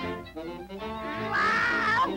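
A cartoon cat's loud yowl of pain, rising and then falling in pitch, begins over the orchestral score about a second and a half in, as a rat seizes its tail.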